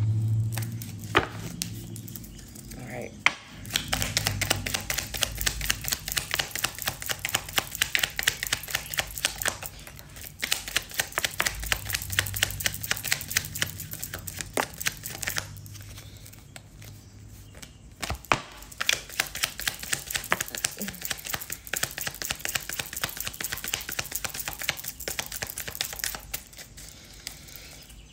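A deck of tarot cards being shuffled by hand: long runs of rapid soft clicks and flicks as the cards slide and tap together, with a few short pauses between bouts.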